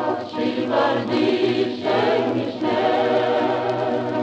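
Choir singing in harmony, several voices moving over a steady low held note.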